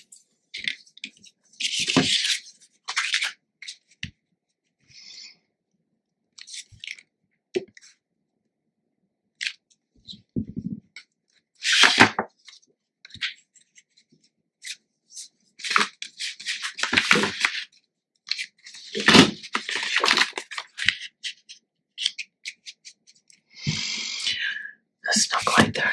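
Sheets of cardstock and patterned paper being handled and slid over a cutting mat: short scattered rustles and light taps with quiet gaps between, the loudest bunches coming about halfway through and in the last third.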